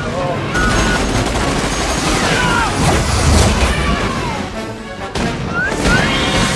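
Film battle soundtrack: gunfire and explosions under a music score, with shouting voices.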